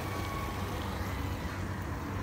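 A motorcycle engine passing at a distance over a steady low outdoor rumble, its faint tone fading out partway through.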